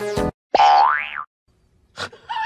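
The last musical notes of a tune break off, then a comedic "boing" sound effect: one rising glide in pitch lasting about half a second, followed by silence.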